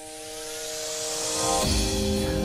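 Live band starting a pop ballad: a sustained keyboard chord under a cymbal roll that swells louder, then bass and drums come in on a new chord about one and a half seconds in.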